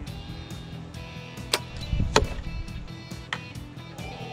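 A compound bow shot over background music: a sharp click and low thump of the release about halfway through, then a bright metallic tink. A tink when shooting an arrow is usually a bad sign.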